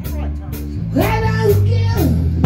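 Live rock band: a male singer sings into a microphone over electric bass, drum kit and electric guitar, holding one note for about a second in the second half.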